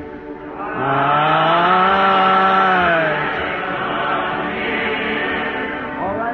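Church congregation singing a slow hymn, the voices holding long notes; one long note swells up about a second in and fades out around three seconds.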